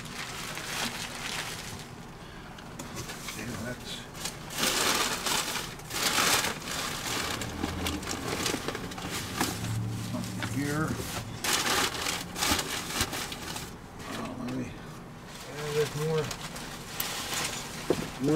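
Bubble wrap and paper packing rustling and crinkling in several short bursts as items are lifted out of a cardboard box, with a few low murmurs between them.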